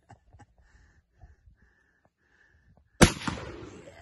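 A single shot from a Model 1895 Chilean Mauser bolt-action rifle in 7mm Mauser, about three seconds in: one sharp crack followed by an echo that dies away over about a second.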